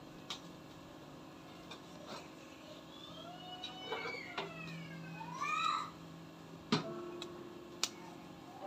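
A few short pitched animal cries, the loudest about halfway through rising and then falling in pitch, among scattered sharp clicks with one loud click near the end.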